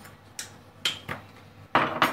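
Kitchen clatter: a few light clicks and knocks, then a louder clatter starting near the end.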